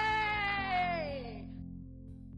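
A woman's high-pitched cheer, one long held cry that slides down in pitch and fades out about a second and a half in, over background music.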